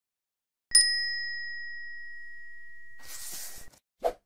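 A single bright bell ding sound effect, struck once about a second in and ringing out as it slowly fades, followed near the end by a short whoosh.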